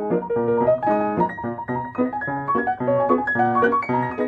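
Boston upright piano being played: a flowing passage of many quick notes and chords, mostly in the middle register.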